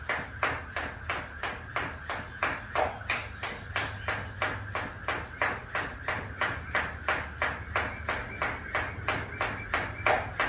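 Jump rope turning steadily at about three turns a second. Each turn and hop onto the mat gives a sharp slap.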